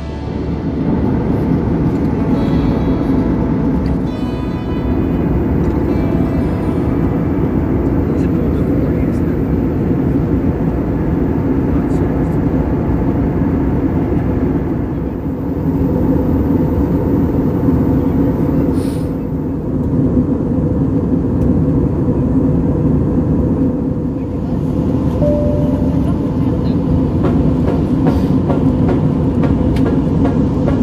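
Steady cabin noise of an Airbus A321 airliner in flight, heard from inside the cabin: a loud, even low rush of engines and airflow.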